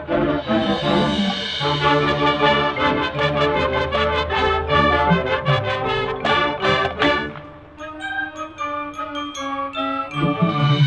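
Live marching band playing: full brass chords over steady drum strikes. About seven and a half seconds in the sound drops and thins to softer held notes with short, high ringing notes above them.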